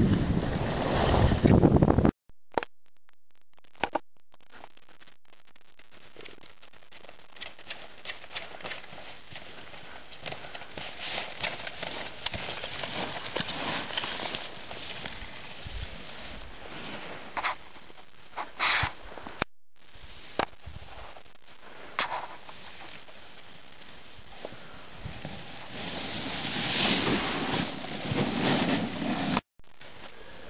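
Wind rushing over the microphone while riding down a snowy run, cut off abruptly about two seconds in. After that, a low hiss with scattered crackles and clicks, and another stretch of rushing wind noise near the end.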